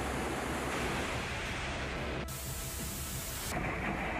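Steady rush of wind and rough sea around a warship under way. For about a second in the middle a harsher, brighter hiss cuts in and out abruptly.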